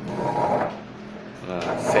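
A man's hoarse voice, speaking briefly twice, once at the start and again near the end.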